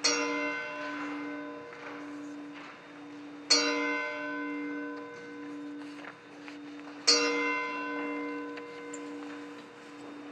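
A single church bell tolling slowly for a funeral, struck three times about three and a half seconds apart. Each strike rings on and fades, over a low hum that carries on between strokes.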